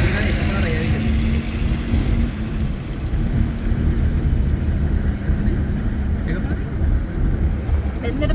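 Road and engine noise inside a moving car: a steady low rumble with a constant hum that drops out briefly a couple of seconds in.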